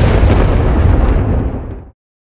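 Loud boom-and-rumble sound effect of an advert's closing logo sting, with a heavy low rumble. It dies away and cuts off to silence just before the end.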